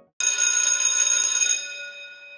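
Electric school bell ringing loud and high-pitched. It starts suddenly, holds for about a second and a half, then stops and rings away.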